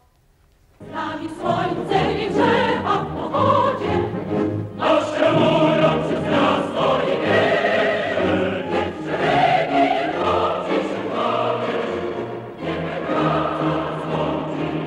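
Soundtrack music: a choir singing, coming in abruptly about a second in after a brief near-quiet.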